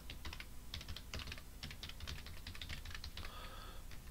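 Computer keyboard being typed on: a quiet, steady run of irregular keystrokes.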